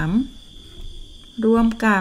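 A woman's voice counting and speaking in Thai, broken by a pause of about a second, with a steady high-pitched whine running unbroken underneath.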